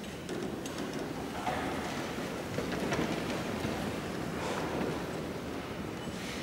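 A wash of rustling and shuffling as people sit down in wooden seats, with paper handling and a few light knocks, swelling through the middle and easing near the end.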